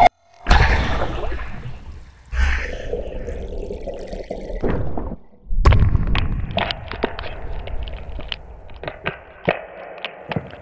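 Sound-design effects of a phone case being crushed and hitting concrete: two sudden heavy hits early, each fading off with a low rumble, then a heavier impact just past the middle followed by many short sharp clicks and ticks like scattering debris.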